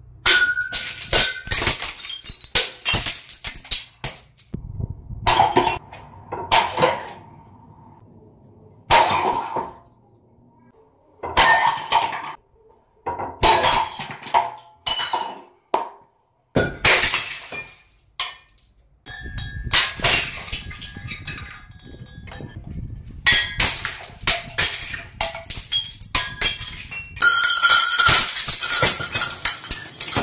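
Glass bottles shattering again and again: hanging bottles swung on ropes crash into each other and standing bottles are struck by a swinging sledgehammer, each crash followed by the clinking of falling shards. The crashes come in quick clusters, with a short silent break about halfway.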